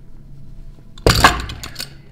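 Stacked weight plates on a loading pin clinking and clanking in a short burst about a second in, as a one-arm lift pulls the stack off the floor.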